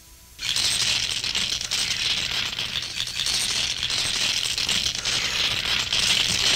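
Faint tape hiss, then about half a second in a loud, dense rattling noise starts over a low hum and keeps on steadily: the noisy opening of a lo-fi 4-track hip hop recording.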